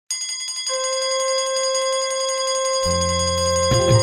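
Instrumental opening of a Bhojpuri devotional song. A bell-like ringing chime leads into a long held note, a low drone comes in about three seconds in, and drum strokes start just before the end.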